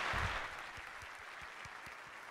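Audience applause that fades over the first half second into a thinner scattering of individual claps.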